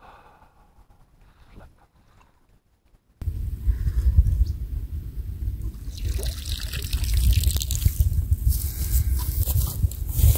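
Hooked carp thrashing and splashing at the surface close to the bank, water splashing and trickling. The splashing is faint at first; from about three seconds in it is loud, over a heavy low rumble.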